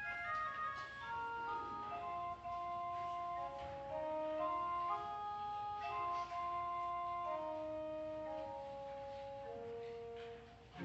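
Church organ playing a soft passage of the prelude: a slow melody of held notes in the middle and upper register, with no deep bass underneath.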